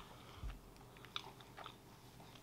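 A person chewing a mouthful of pastry with the mouth closed, faintly, with a few soft, short mouth clicks.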